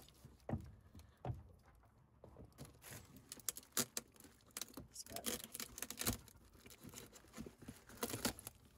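A knife cutting through a cardboard box, with irregular soft scrapes, clicks and crinkles as the cardboard and its plastic-wrapped contents are handled.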